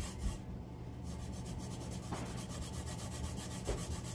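Gloved fingers rubbing back and forth over a glitter-coated tumbler, a continuous scratchy rubbing that burnishes the loose glitter flat. A steady low hum runs under it.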